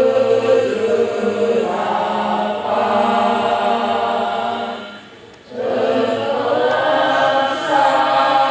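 A choir singing a slow song in long held notes, with a short break for breath about five seconds in.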